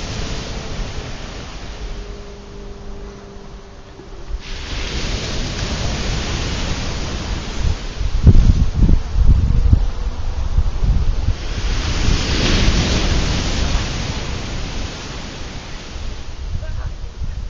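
Ocean surf breaking and washing up on a sandy beach, swelling and falling in surges. Wind buffets the microphone in heavy low rumbles around the middle.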